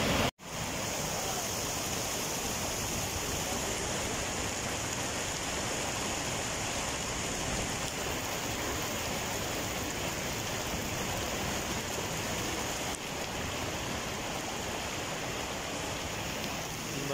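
Steady rain falling onto wet ground and running rainwater, a constant even hiss. The sound cuts out for a moment just after the start.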